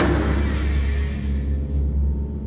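Deep, steady low rumbling drone of horror sound design. The echo of a sharp knock or bang fades away over the first second.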